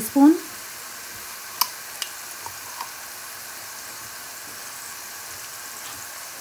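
Chopped onions and cumin seeds sizzling steadily in hot oil in a stainless steel pan. Four light clicks of a spoon against the pan come between about one and a half and three seconds in, as garlic-ginger paste is dropped in.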